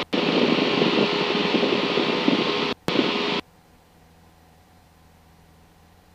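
Cessna 172 Skyhawk cockpit noise from the engine and propeller at climb power, picked up through the headset intercom microphone as a loud, steady rush. It drops out briefly once, then cuts off suddenly a little past halfway as the intercom squelch closes, leaving only a faint low hum.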